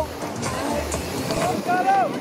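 Short voices calling out at a BMX race over a steady outdoor hiss, with wind rumbling on the microphone.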